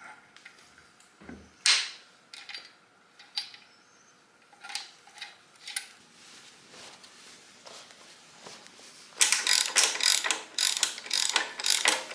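Hand socket ratchet clicking rapidly in quick runs near the end, tightening bolts. Before that come scattered single clicks and knocks.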